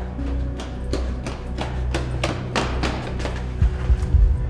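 Quick footsteps running on a concrete floor, about four a second, over a low droning film score, with a heavy low thump near the end.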